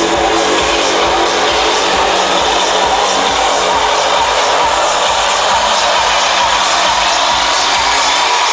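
Trance music played loud over a festival sound system and recorded from within the crowd, with a steady pulsing beat under held synth tones.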